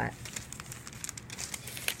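Paper crinkling and rustling as coupons are handled: a quick run of small, irregular crackles.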